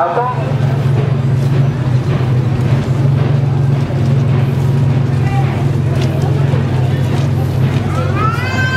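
A vehicle engine running with a steady low drone, under the chatter of a street crowd.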